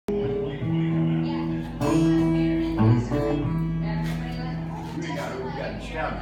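Blues harmonica played into a microphone in long held chords, with an acoustic guitar accompanying.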